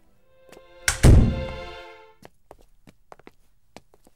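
A fridge door pulled open with one heavy thunk about a second in, followed by scattered light clicks and taps.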